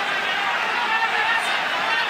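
Arena crowd at a boxing match cheering and shouting, a steady wash of many voices with no single voice standing out.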